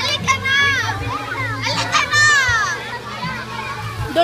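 Children shouting and squealing at play, their voices high and overlapping, with one long high-pitched shriek a little after two seconds in.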